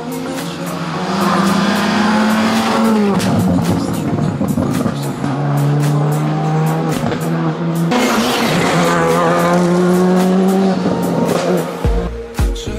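Skoda Fabia R5 rally car's turbocharged 1.6-litre four-cylinder engine revving hard as the car drives the stage. Its pitch climbs and then drops at gear changes, about three seconds in and again near the end.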